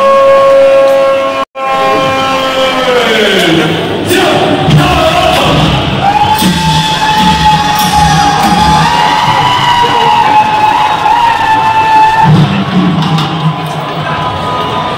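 A long drawn-out shouted call over the loudspeakers at the Wagah border parade: one pitch held for a few seconds, then falling away. About six seconds in, a second long, wavering call rises over crowd noise and music.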